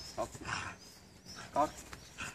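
A pit bull growling in short bursts as it pulls on a tug toy, with small birds chirping in the background.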